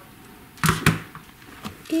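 Brief rustling clatter from handling plastic toy figures and a string of plastic gold beads, about two-thirds of a second in, then a faint tick near the end over quiet room tone.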